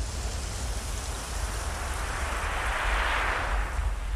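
Steady hiss like falling rain, swelling about two to three seconds in and easing again, over a deep continuous bass rumble.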